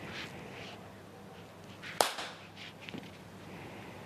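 One sharp hand clap about two seconds in, followed by a few fainter clicks.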